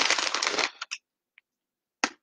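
A plastic snack bag crinkling as it is handled, a dense rustle lasting under a second near the start, followed by a couple of faint ticks.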